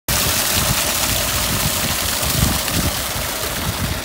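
Fast water rushing and splashing down a narrow concrete irrigation channel, heard close up as a loud, steady rush with an uneven low rumble underneath.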